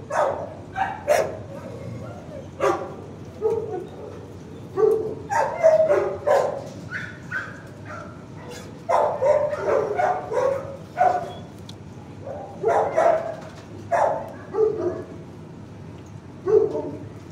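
Dog barking repeatedly in a kennel, in irregular runs of short, sharp barks with brief pauses between them.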